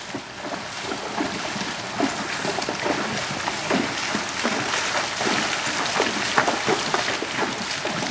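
Two Tennessee Walking Horses wading through a shallow creek: irregular splashing of their hooves in the water over an even rush of water.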